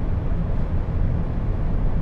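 Steady low rumble of road and wind noise inside the cabin of a Jaguar I-Pace electric SUV cruising at about 200 km/h, with no engine sound.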